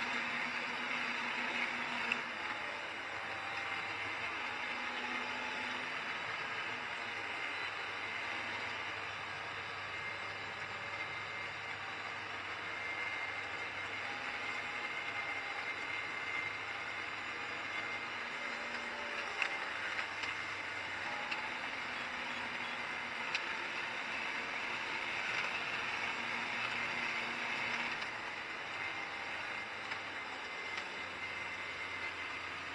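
Steady cab interior noise of a Holmer Terra Variant 600 self-propelled slurry applicator on the move: an even, hissy drone from its engine and drive with a low hum underneath. A few light clicks stand out.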